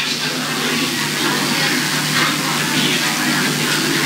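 A steady, loud hiss with faint voices murmuring underneath it and a low steady hum.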